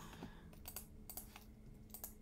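Computer keyboard keys tapped: several faint, sharp clicks at uneven intervals.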